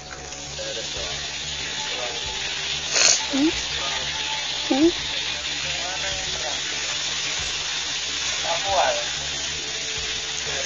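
A steady hiss, with a faint click about three seconds in and a few faint, short calls that slide up or down in pitch, twice in the middle and once near the end.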